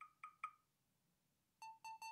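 Yandex Station Lite smart speaker giving faint, short electronic beeps as it responds to a voice request to Alice. There are three quick beeps at the start, then a faster run of ticking tones near the end, just before its spoken reply.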